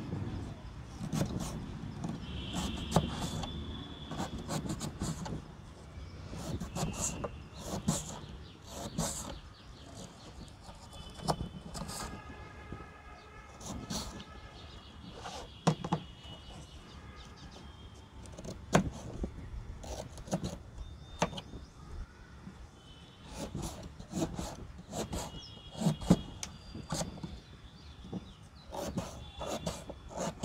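Kitchen knife cutting a beetroot on a plastic cutting board: irregular knocks of the blade against the board as the beet is sliced into chunks.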